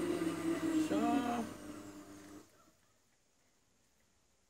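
Philips soup maker's blender motor running in its blending phase with a steady hum, stopping abruptly about two and a half seconds in.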